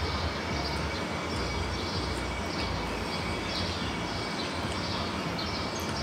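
Steady low rumble with an even hiss over it: outdoor background noise, like distant traffic.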